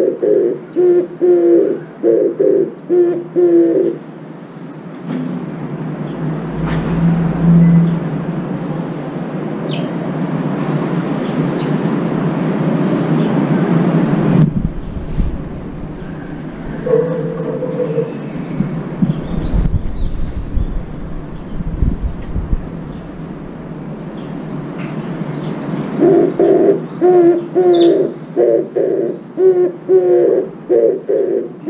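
Oriental turtle dove cooing, a rhythmic run of short, evenly repeated low hoarse notes that stops about four seconds in and starts again near the end. In the gap, a steady rushing noise with a few low rumbles.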